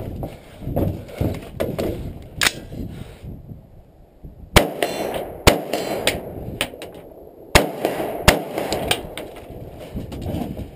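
Four loud gunshots in two pairs: the first about four and a half seconds in with the next a second later, then two more about three seconds after that, less than a second apart. Lighter knocks and clatter come in the first couple of seconds.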